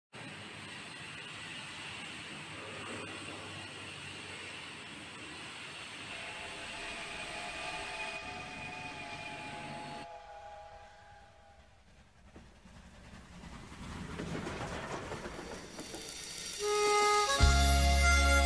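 Train sounds: a steady rumble with a held horn-like tone about halfway through, then a dip and a rising train noise. Near the end a song's instrumental intro comes in, with a strong bass line.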